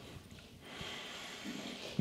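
A man's faint breathing out through the nose with his lips pressed shut: a stifled laugh.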